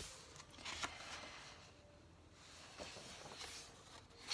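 Faint handling of a large book's thick pages: a soft rustle of paper and a few light touches as a hand smooths the open page, quietest in the middle.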